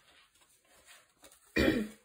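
A woman clearing her throat: one short, loud cough-like burst about one and a half seconds in, after a quiet stretch.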